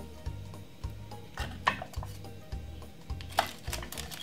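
Metal kitchen tongs clicking and scraping against a roasting tray and a serving plate as roast potatoes are lifted out, a few sharp clicks with the loudest about one and a half and three and a half seconds in. Background music with a steady low beat runs underneath.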